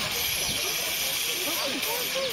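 A steady high hiss throughout, with faint voices of people talking in the background.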